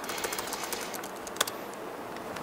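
Laptop keyboard typing: a quick run of light key clicks, with one louder keystroke about one and a half seconds in as a command is entered.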